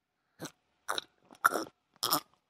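Cartoon gulping sound effect: about four short swallowing sounds of someone drinking from a bottle, the last the loudest.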